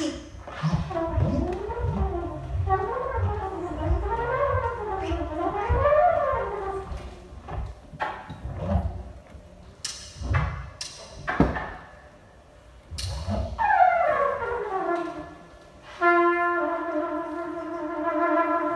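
Free-improvised music: wavering tones sliding up and down over low thumps, then scattered sharp knocks, a falling slide, and near the end a held horn note, cornet-like.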